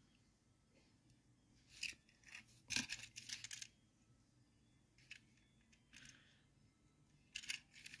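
Faint clicks and rustles of a small toy car being handled and turned in the fingers: a short burst about two seconds in, a cluster of clicks a second later, and one more near the end, with near silence between.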